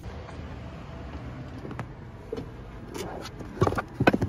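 Low steady rumble of a car interior, then near the end a few loud knocks and rattles as a plastic pet carrier on the back seat is grabbed by its handle and lifted.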